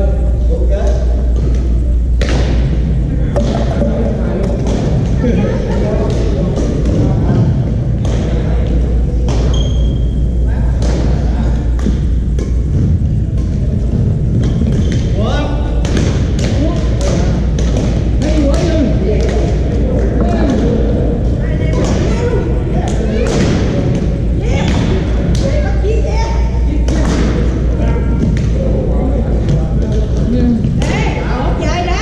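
Badminton rackets striking shuttlecocks, sharp hits at irregular intervals from several courts and echoing in a large hall, with voices in the background and a steady low hum underneath.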